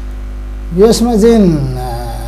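Steady electrical mains hum on the studio audio, with a man's voice coming in about a second in as one drawn-out syllable whose pitch rises, wavers and falls.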